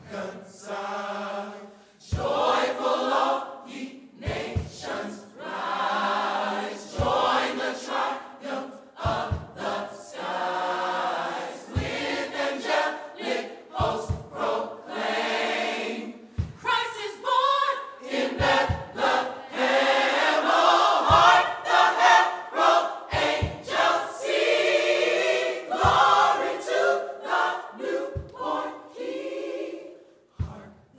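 Mixed church choir of women and men singing together, with a sharp beat about every two seconds.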